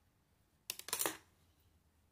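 Metal knitting needles clicking and scraping against each other as a stitch is purled: a quick cluster of clicks lasting about half a second, near the middle.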